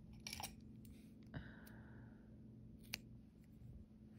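Near silence with a few faint, short clicks and a soft rustle as hands handle loose crochet yarn.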